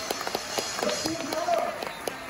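A voice speaking over a public-address system in a show arena, with scattered sharp clicks.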